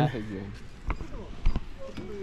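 A voice trails off, then two dull thumps about half a second apart, the second one louder, with faint voices in between.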